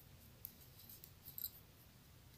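Faint clicks of metal knitting needles as stitches are worked in yarn: a single tick about half a second in and a short cluster of ticks near the end.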